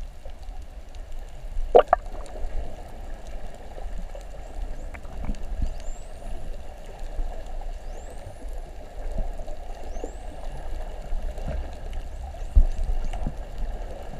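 Spinner dolphins whistling underwater: three thin rising whistles about two seconds apart, over a steady wash of water noise. Two sharp knocks stand out, one about two seconds in and one near the end.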